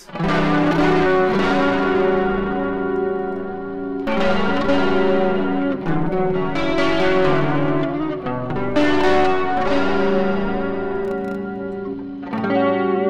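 Fender Stratocaster electric guitar played through an Axe-FX III modeler with its Dynamic Distortion block engaged: sustained chords left to ring, with new chords struck about 4, 6.5 and 9 seconds in. The player is testing the block's bias setting.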